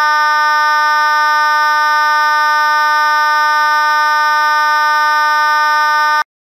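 Federal Signal Vibratone 450 series B4 fire alarm horn, the high-current horn-only model, sounding continuously: a loud, steady electric buzzing tone from its vibrating diaphragm.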